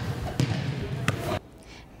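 Basketballs bouncing on a gym's hardwood floor in a large echoing hall, with sharp bounces about half a second and a second in. The sound cuts off abruptly about a second and a half in, leaving quiet room tone.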